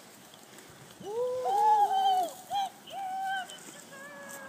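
A dog whining and yelping in high-pitched drawn-out cries, one long cry followed by two shorter ones, starting about a second in. It is the excited cry of a trailing dog that has just reached the person it was tracking.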